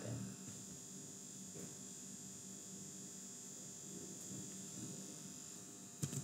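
Faint steady room tone: a low electrical hum with a thin high whine and hiss, and nothing else happening.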